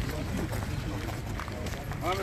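Indistinct voices of people talking outdoors over a steady low rumble, with a few light knocks.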